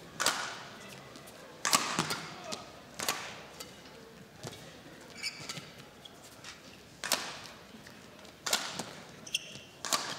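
Badminton rackets striking a shuttlecock during a long rally, a sharp crack every second or so with quieter gaps, and court shoes squeaking briefly on the court surface.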